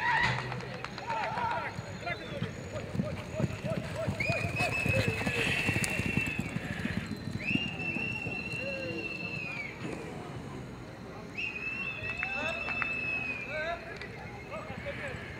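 Crioulo horses galloping on a dirt arena, their hoofbeats thudding, mixed with people's shouts. Three long high-pitched calls of about two seconds each sound in the second half.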